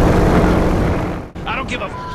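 Racing kart's engine running on track, heard from an onboard camera, with a man swearing at the start. The engine sound cuts off abruptly just past a second in, followed by a brief burst of voice.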